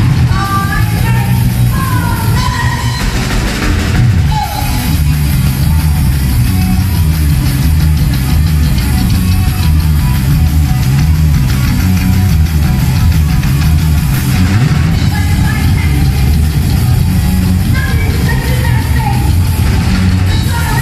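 Live punk rock band playing loud: pounding drums, bass and electric guitar, with a woman's shouted vocals in the first few seconds and again near the end, and an instrumental stretch in between.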